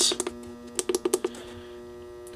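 Plastic buttons clicking as they are pressed on a DieHard electronic battery charger's control panel: a couple at the start, then a quick run of about six about a second in, over a steady electrical hum.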